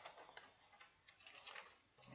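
Near silence: faint room tone with a few soft, irregular ticks.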